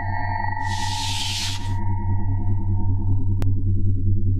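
Electronic sci-fi intro music: a steady pulsing low synth drone under high held synth tones, with a hissing whoosh from about half a second in that lasts about a second, and a single sharp click near the end.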